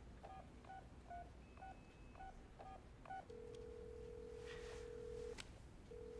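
Touch-tone telephone being dialled: about seven short keypad tones in quick succession. A little past halfway a steady ringing tone on the line follows as the call rings through; it breaks off briefly near the end and starts again.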